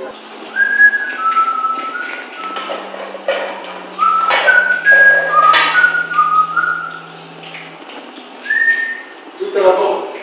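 A man whistling a tune: a run of short held notes that step between pitches, in phrases with brief pauses between them.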